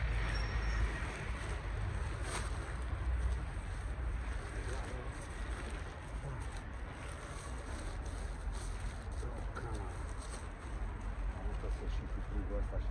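Rustling and crackling of tent fabric and camping gear being handled and packed, with a sharp click about two seconds in, over a steady low rumble. A bird coos faintly now and then in the background.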